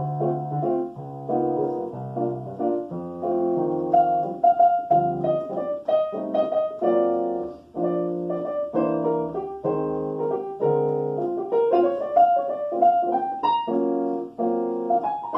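Digital stage piano playing a jazz waltz in three-four time. Held bass notes and chords sit under a melody line, in an arrangement built around repeated ii–V–I chord progressions.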